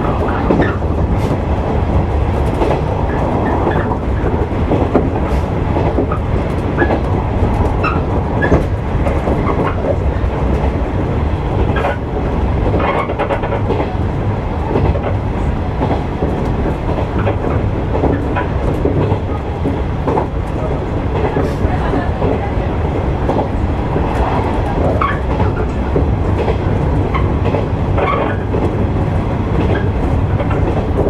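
Electric train running along the line, heard from inside the cab: a steady rumble of the running gear with irregular clicks of the wheels passing over the track.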